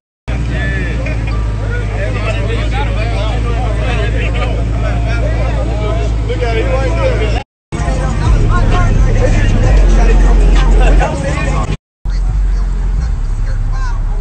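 Crowd chatter over the steady low rumble of idling car engines, with a louder rumble in the middle stretch. The sound cuts out abruptly for a moment twice, about a third of the way in and again near the end.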